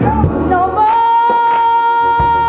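A woman gospel soloist singing lead, climbing into one long held high note about a second in, with a steady beat behind her.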